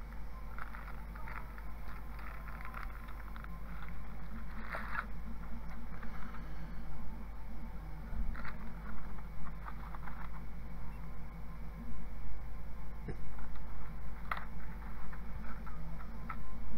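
Handling noise from unpacking a 3D printer kit: a clear plastic bag of small parts crinkling and rustling, and hands shifting parts in the foam packaging, in irregular bursts with a few sharp clicks. A steady low hum runs underneath.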